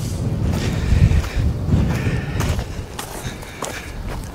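Low, uneven rumble of wind buffeting the microphone over a side-by-side UTV's engine, with a few soft knocks and no speech.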